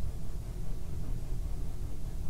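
Room tone: a low, steady rumble with a faint hiss and no distinct sound event.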